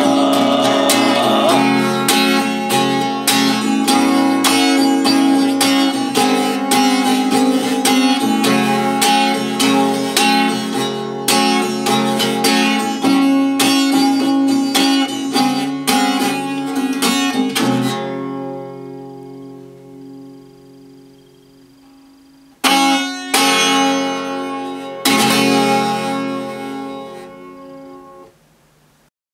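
Eight-string Ovation Celebrity CC 245 acoustic guitar strummed in steady chords, with the sung line ending about a second in. The strumming stops about two-thirds of the way through and the chords ring down. Two last strummed chords follow, each left to ring out and fade as the song ends.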